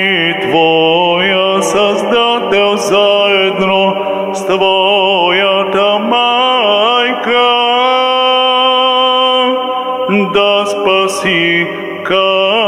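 A man chanting solo into a handheld microphone: Orthodox Matins chant, a melismatic line with long held notes. A steady low note sounds beneath it and drops out about ten seconds in.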